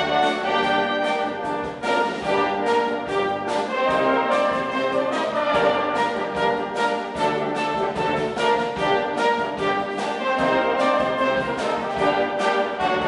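Brass band playing a pop-song medley, the full band of cornets, horns, trombones, euphoniums and tubas together over a steady drum beat.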